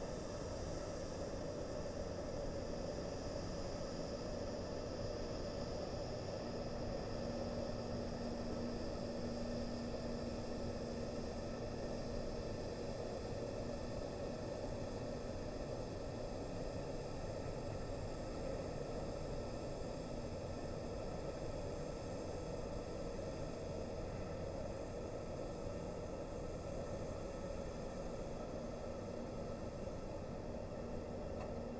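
A steady hum and hiss with a few faint, unchanging tones and no distinct events.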